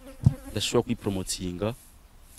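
A man's voice speaking quietly in short phrases, trailing off near the end.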